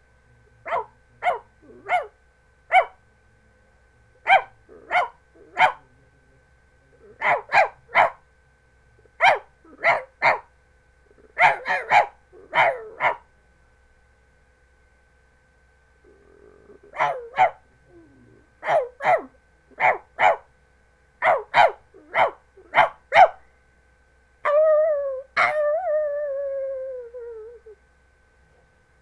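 A man imitating a dog with his voice: short barks in quick groups of two to five, a pause of about three seconds midway, then one long howl falling in pitch near the end.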